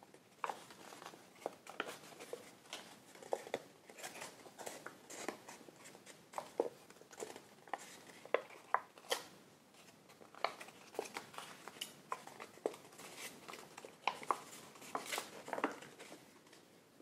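Stiff Stark origami paper crackling and crinkling under the fingers as the pleats of a box-pleated model are pressed and collapsed: an irregular run of short crisp snaps, several a second.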